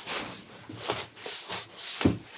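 A hand rubbing and sliding over a corrugated cardboard box as the box is shifted on a table, giving several short swells of dry, scratchy scraping.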